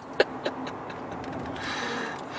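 A man's laughter trailing off in two short bursts, then the steady road and engine noise heard inside a moving car.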